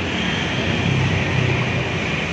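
Steady motor-vehicle noise from the road: an engine running with a low, even hum.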